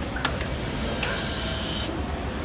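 Bean-to-cup coffee vending machine finishing a brew and opening its automatic serving door: a sharp click about a quarter of a second in, then a steady high-pitched tone lasting about a second.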